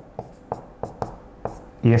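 Marker pen writing on a whiteboard: about six short taps and strokes as a few small characters and an arrow are written.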